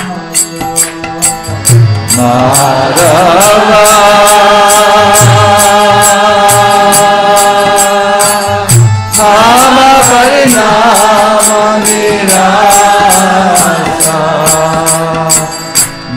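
A man chanting a devotional mantra in long held phrases, two phrases with a short break between them about nine seconds in. Under the voice runs an even, quick beat of small jingling percussion with a low hand drum.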